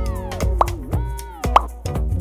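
Cartoon transition sound effects over background music: a falling glide, then two quick rising pops about a second apart.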